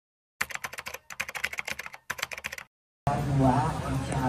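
Rapid keyboard typing clicks in three quick runs, stopping about two and a half seconds in. A person speaking then cuts in, louder, about three seconds in.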